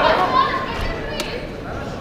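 Many voices shouting and talking over one another in a large hall, the spectator crowd during a fight. A single sharp click sounds a little over a second in.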